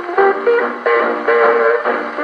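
A 78 rpm shellac record playing on an HMV 104 acoustic gramophone with a thorn needle: a 1940s Hawaiian band's instrumental passage with guitar to the fore. The sound is thin, with no bass.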